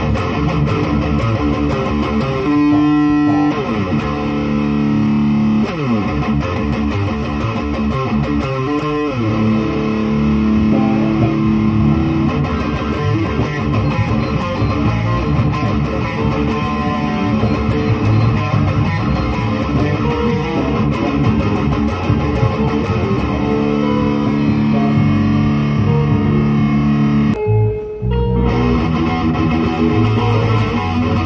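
Kramer Baretta Special electric guitar, its single bridge humbucker played through an amplifier: fast riffs and lead runs with sliding notes a few seconds in. The playing stops briefly near the end, then picks up again.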